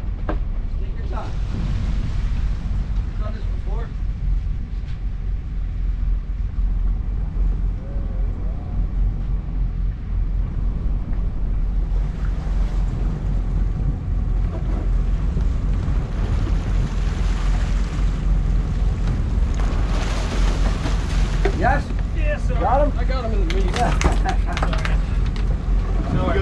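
Low, steady rumble of the sportfishing boat's diesel engines with wind buffeting the microphone, and a rushing hiss of churned water behind the stern that builds through the second half. Crew voices call out briefly near the end.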